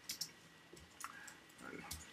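A few scattered computer keyboard keystrokes, faint short clicks with pauses between them.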